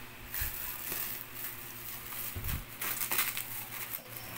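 Plastic wrap crinkling and rustling as hands handle and pull at it, with scattered short crackles and a couple of low bumps.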